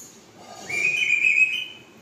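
African grey parrot whistling: one steady note about a second long, starting about halfway through and stepping up slightly in pitch near its end.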